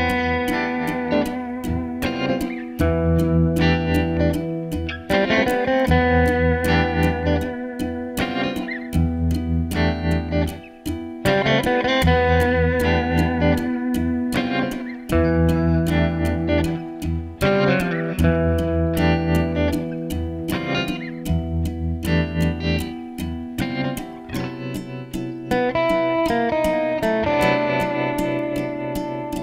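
Instrumental music led by a Fender Stratocaster electric guitar playing a melody of plucked notes with wavering vibrato, over a layered backing with low notes held about a second and a half each.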